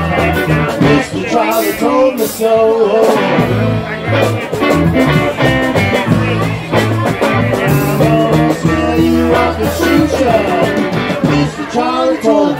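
Live blues-rock band playing a loud passage with a walking electric bass line, electric guitar and drums.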